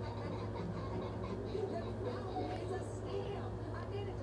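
Faint, indistinct voices talking in the background over a steady low hum.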